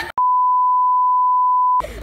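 A steady, pure, single-pitch censor bleep, edited in over muted audio, lasting about a second and a half and cutting off abruptly.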